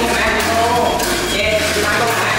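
Basic-kit Tamiya Mini 4WD cars running laps on a plastic multi-lane track: small electric motors whining, with voices in the room.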